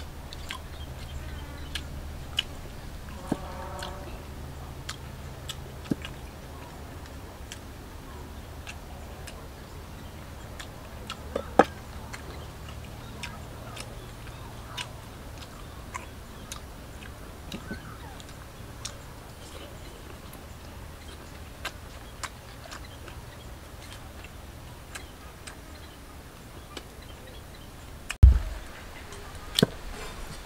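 Close-up eating sounds: a person chewing grilled cow skin, with scattered sharp mouth clicks and small taps about once a second, one louder click near the middle, over a steady low hum.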